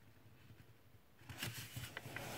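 Faint rustling and creasing of a sheet of folding paper being handled and folded by hand, starting about halfway in after a near-silent first second.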